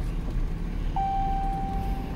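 A steady low rumble, with a single steady beep starting about halfway through and lasting about a second.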